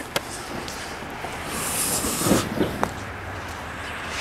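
Outdoor street noise: a steady hiss that swells for about a second near the middle, with a few light clicks.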